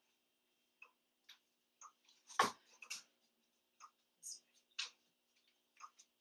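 Tall case pendulum clock ticking faintly, about twice a second, with one louder knock about two and a half seconds in.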